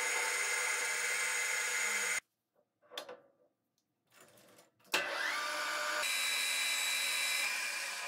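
Metal lathe running, with a steady whine while its cutting tool turns a steel rod; the sound stops abruptly about 2 s in. After a few faint knocks the lathe starts up again about 5 s in with a rising whine, then runs steadily.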